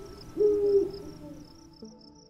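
An owl hoots once about half a second in, a short call that falls away at its end, over crickets chirping steadily in a high, even pulse.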